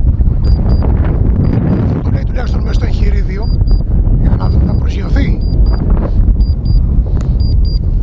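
Strong wind buffeting the microphone with a heavy, uneven rumble, while a short high electronic beep repeats about once a second, sometimes doubled. Brief muffled voice sounds come through the wind.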